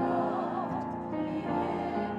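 Mixed church choir singing a sustained anthem, several voice parts holding chords that change every half second or so, with some wavering vibrato in the upper voices.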